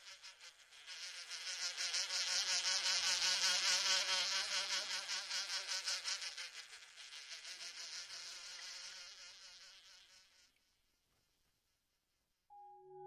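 Flies buzzing. The buzz swells over the first few seconds, then fades away to silence about ten and a half seconds in.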